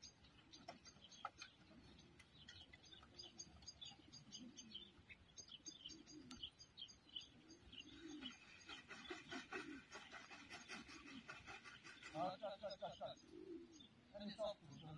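Faint cooing of racing pigeons around the lofts, repeated low rolling calls, with high-pitched bird chirping over it that grows busier in the second half.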